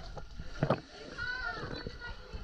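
Water splashing close by as swimmers in life vests kick and paddle, with one sharp splash just under a second in. A voice calls out over the splashing in the second half.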